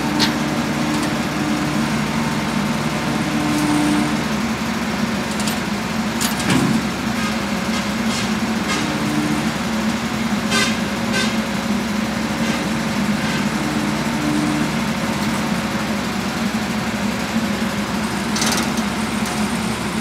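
Slavutich KZS-9-1 combine harvester's diesel engine running steadily at idle, with a few short metallic clanks over it.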